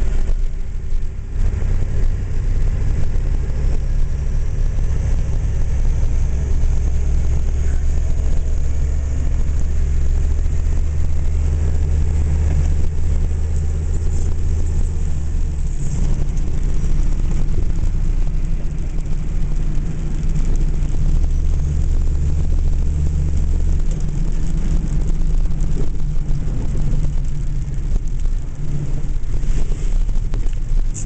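Engine and tyre noise heard from inside a vehicle driving on a rough dirt road: a steady, deep rumble that eases a little about halfway through and again later.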